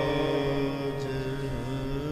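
Sikh kirtan: harmonium holding steady chords under a chanted vocal line that dips in pitch about one and a half seconds in.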